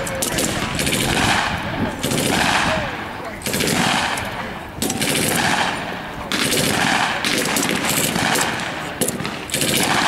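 Sustained automatic gunfire and rifle shots, blank rounds fired during an infantry fire-and-manoeuvre drill, in dense rapid bursts that keep coming in waves.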